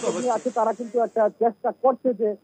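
A voice speaking in Bengali, over a steady hiss that cuts off abruptly just past halfway.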